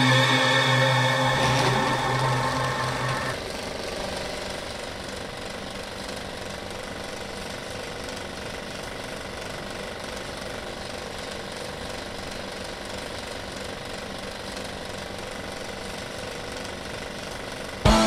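A loud sustained chord that cuts off about three seconds in, followed by a steady, even engine-like drone.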